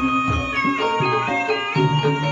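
Javanese gamelan music for ebeg dance: ringing pitched metal notes over regular hand-drum strokes, playing continuously.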